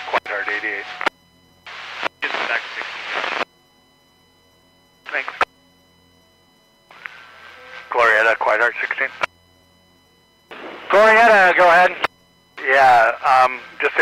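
Marine VHF radio traffic heard through a radio speaker: several short spoken transmissions, with silent gaps between them as each one cuts off.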